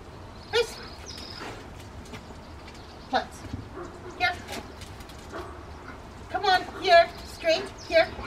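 Rottweiler barking in a run of short, pitched barks about two a second in the last couple of seconds, after a few single sounds earlier on.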